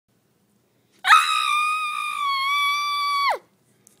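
A single long, high-pitched scream, held at a nearly steady pitch and ending with a sharp downward slide as it cuts off.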